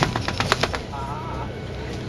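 Volvo Olympian double-decker bus's steady low engine and road rumble, with a quick run of about ten sharp rattling clicks in the first second.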